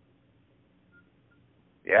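Near silence on a phone-line recording: a faint low hum, with two short, faint high beeps about a second in. A man's voice starts just before the end.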